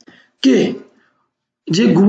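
A person clearing their throat once, briefly, about half a second in, between stretches of narration.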